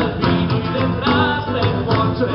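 Live band music: a singer over electric guitar and drums, with a steady beat.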